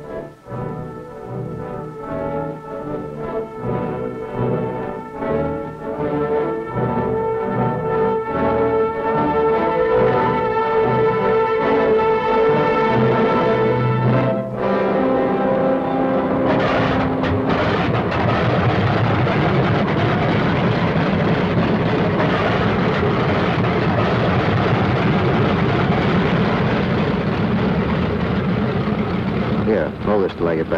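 An orchestral film score swells with brass and timpani for about the first half. Then, about halfway through, a P-47 Thunderbolt's Pratt & Whitney R-2800 radial engine starts up and runs loud and steady.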